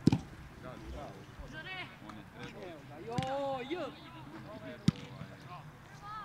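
Football kicked with a sharp, loud thump right at the start and a second thud of a kick about five seconds in, with young players shouting and calling on the pitch in between.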